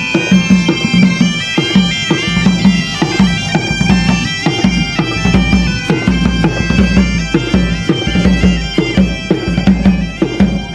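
Bagpipes playing a lively tune, a steady drone under a shifting chanter melody, with a drum keeping the beat, as a small band of street musicians plays while walking.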